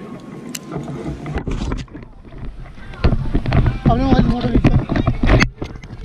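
Wind rumbling and buffeting on the camera microphone at a paraglider landing, much louder in the second half, with a person's wavering shout or call over it.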